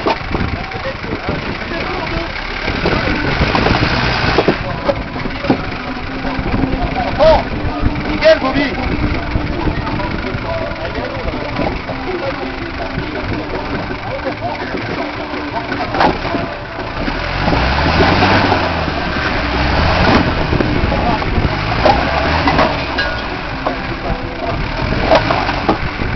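Toyota 4x4's engine running under load as it crawls over rocks, swelling to harder revs for a few seconds about two-thirds of the way through. A few sharp knocks come through along the way.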